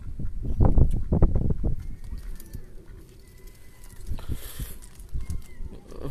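Mallard ducks quacking in a short run of low, rough calls from about half a second in to just under two seconds, then quieter, with a few faint thin whistles behind.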